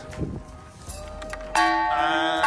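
Large brass temple bell struck once by its clapper about one and a half seconds in, ringing on with many sustained tones.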